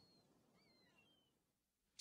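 Near silence: a faint hiss with a few faint, high, gliding chirps in the first second, dying away to complete silence before the end.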